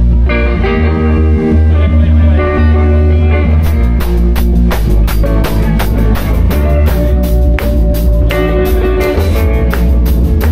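Live rock band playing loudly: electric guitars and bass guitar, with the drum kit coming in about three and a half seconds in.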